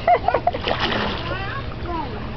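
A toddler going off the pool edge into a swimming pool, caught by an adult standing in the water: one splash about half a second in, with a child's voice around it.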